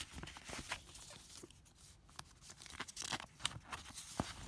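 Clear plastic binder sleeve crinkling and paper rustling as documents are handled inside it, a run of small irregular crackles that thins out midway and picks up again near the end.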